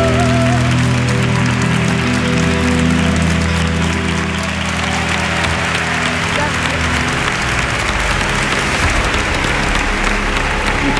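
Final held sung note with vibrato ends about half a second in over the accompaniment's closing chord, which sustains and fades out over the next several seconds as audience applause swells.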